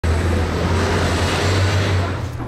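Steady street traffic noise with a heavy low rumble, starting abruptly.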